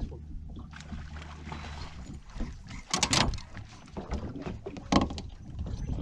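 Water splashing and knocking against the boat's side as a hooked pike thrashes at the boat while being landed, with two loud bursts about three and five seconds in.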